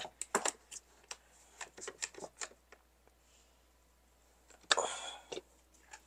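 Ratchet clicks of a one-handed bar clamp's trigger being squeezed to tighten it: a quick, uneven run of clicks over the first couple of seconds. A brief rustle follows near the end.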